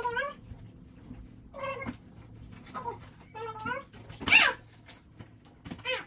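Young children laughing in short, high-pitched squealing bursts, about one a second, the loudest and shrillest a little past the middle.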